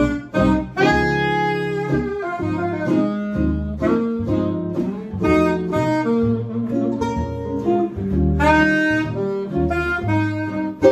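Small swing jazz band playing: a saxophone carries the lead line, with long held notes about a second in and again near the end, over guitar chords and a plucked upright bass line.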